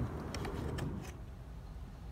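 A few faint light clicks in the first second, over a steady low background rumble.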